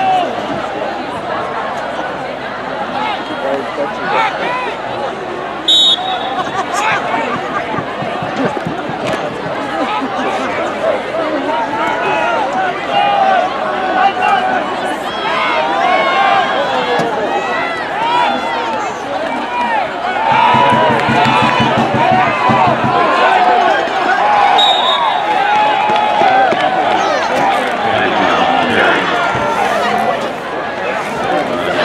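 Football crowd in the stands: many voices talking and calling out, growing louder about 20 s in. Two short, high whistles sound, about 6 s in and near 25 s.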